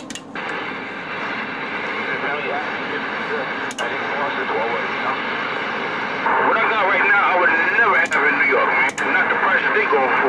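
Galaxy CB radio's speaker receiving: a click as the channel opens, then steady static hiss with another station's voice coming through, too garbled to make out. The voice gets louder about six seconds in, and a few sharp static pops cut through.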